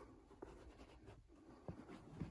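Faint rustling of a hand leafing through a stack of fitted baseball caps, with a couple of soft taps, once early and once near the end.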